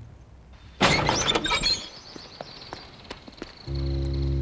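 Heavy iron jail gate being unbolted: a sudden loud metallic clank and rattle about a second in, followed by a few lighter clicks of the bolt and lock. Music comes in near the end.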